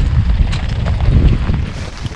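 Wind buffeting the microphone in heavy rain, a loud low rumble that drops away near the end.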